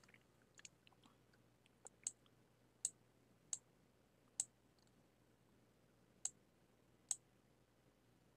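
Computer mouse clicking: about six sharp single clicks at irregular intervals over a quiet room.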